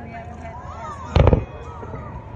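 Aerial fireworks shells bursting, a quick cluster of loud bangs a little past a second in.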